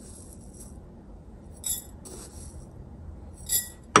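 A spoon scooping dried elderberries from a glass jar and tipping them into a glass mason jar: a few short, faint bursts of dry berries rattling and spoon clinking against glass, the last and loudest near the end.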